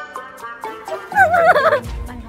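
Background music with a short, warbling, gobble-like sound about a second in.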